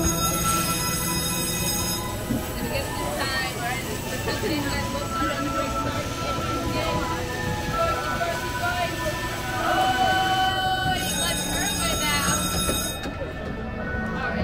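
Electronic music and held beeping tones from a carnival water-gun race game running during a round, with people's voices underneath.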